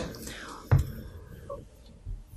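A pause in a woman's speech at a desk microphone: soft breath-like noise that fades, a single low knock a little under a second in, then faint room tone.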